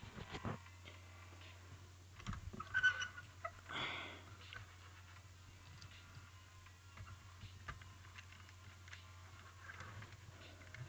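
Faint clicks and rustles of LEGO plastic pieces being handled and pressed back together while a model that came apart is repaired, with a few louder handling noises a few seconds in, over a low steady hum.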